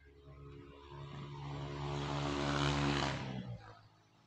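A motor vehicle passing by: engine hum and tyre noise build for about three seconds, then drop away quickly.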